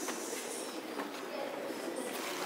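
Background murmur of people's voices with a few soft footsteps on stone steps, about one a second.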